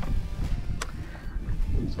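Low rumble of wind and water around an open fishing boat, with one sharp click just under a second in.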